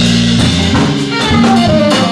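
Jazz combo playing live: drum kit with cymbals keeping time, a saxophone playing a line of quick changing notes, and low bass notes stepping underneath.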